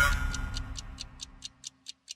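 Closing jingle of a TV magazine programme: a musical hit dying away, then clock-like ticks about four or five a second, growing fainter.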